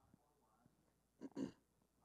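A person's single short throat noise in two quick pulses about a second and a quarter in, against near silence with a faint voice in the background.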